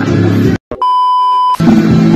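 Music with guitar cuts off about half a second in; after a brief gap, a single steady electronic bleep sounds for about three quarters of a second, then the music starts again.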